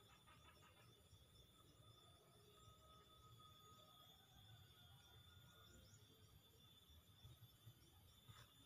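Near silence: faint outdoor background with a few faint, high, short chirps.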